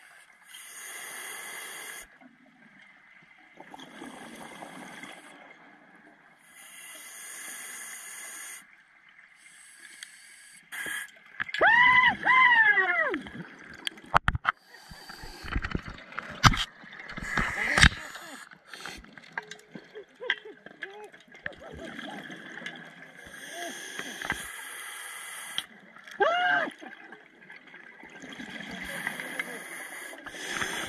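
Scuba diver breathing underwater through a regulator: exhaled bubbles rush out in bursts about every three seconds, in the first ten seconds and again near the end. In between come a few short hummed voice sounds through the mouthpiece and a run of sharp clicks and knocks.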